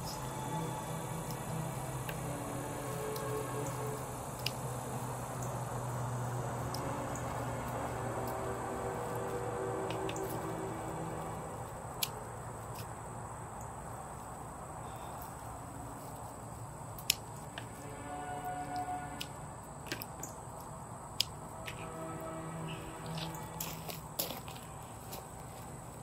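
Soft background music of slow, sustained notes, with a few sharp clicks over it, the loudest about 17 seconds in.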